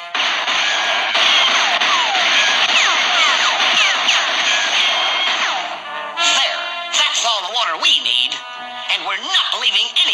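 Cartoon soundtrack: a loud, noisy sound effect over orchestral music for about the first six seconds, then orchestral music alone.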